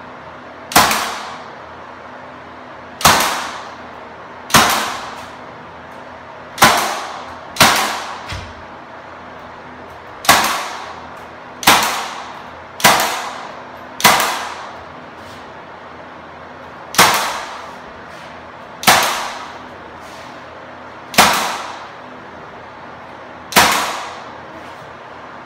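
Senco cordless 18-gauge brad nailer firing brads into wooden window trim: about thirteen sharp shots spaced one to three seconds apart, each with a brief ring.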